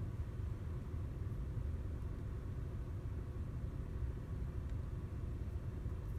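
VW Jetta Mk6 engine idling, heard from inside the cabin as a steady low rumble.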